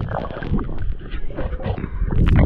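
Water sloshing and gurgling close to the microphone, with a steady low rumble and irregular small pops and crackles throughout.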